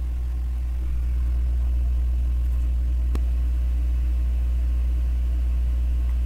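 A steady low hum, with one short click about three seconds in.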